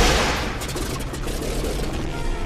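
Film sound of machine-gun fire: a loud rush of noise at the start, then rapid shots for about a second over a low engine drone.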